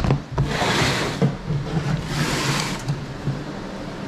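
A plastic storage tote lid being handled, with rustling, scraping bursts and a sharp knock about a second in, over a steady low mechanical hum.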